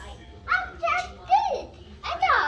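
A young child's voice making three short high-pitched vocal sounds without clear words, the last rising and then falling in pitch.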